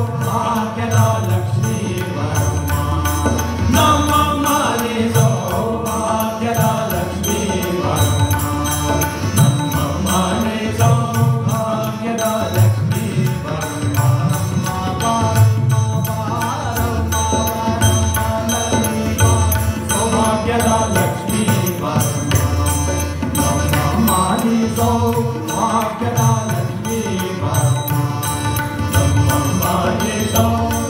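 Male singer performing Indian classical vocal music with tanpura drone, harmonium and tabla accompaniment.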